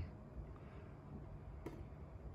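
Faint trickle of cold water poured from a thermos onto yerba mate in a ceramic gourd, with one light click about a second and a half in.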